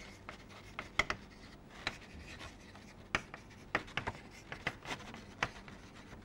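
Chalk writing on a blackboard: an irregular string of sharp taps and short scratches as letters are written. The loudest taps come about a second in.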